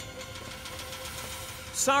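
A steady mechanical hum of an engine running at idle, with a faint regular knock. A man's voice starts near the end.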